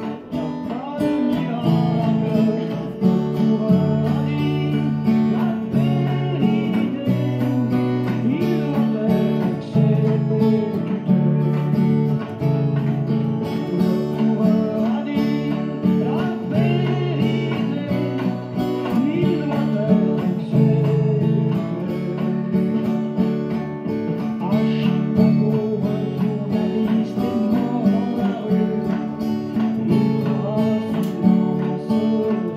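Acoustic guitar with a capo, strummed chords in a steady rhythm.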